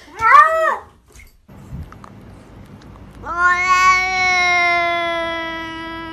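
Two cat meows. A short, rising-and-falling meow comes from a wet cat in a bath just after the start. From about three seconds in, a second cat gives one long, drawn-out meow that sinks slightly in pitch and is still going at the end.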